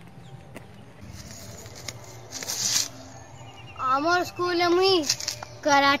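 A boy's voice calling out in two long, drawn-out shouts about four seconds in, with another beginning near the end. A short hiss comes shortly before them.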